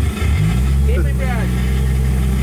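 The drift car's forged 1JZ turbocharged straight-six fires right at the start and settles within a fraction of a second into a loud, steady idle.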